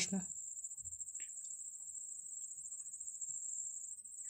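A steady high-pitched trill runs on at a low level, with a few faint short clicks.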